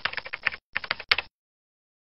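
Computer keyboard typing sound effect: two quick runs of key clicks, each about half a second long, stopping a little after one second in.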